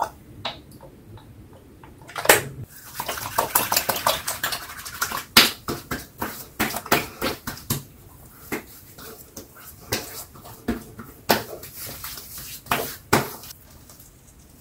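Hands rubbing and patting witch hazel toner onto a freshly shaved face and neck: a couple of seconds of wet rubbing, then a run of sharp, irregular skin slaps.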